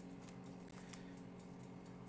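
Faint handling sounds of fingers rubbing oil into raw lobster tail meat on a metal tray, with a small click about a second in, over a steady low hum.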